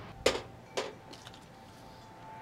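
Handling noise from wiring work at a dishwasher's metal junction box: two sharp clicks about half a second apart, then a few faint ticks.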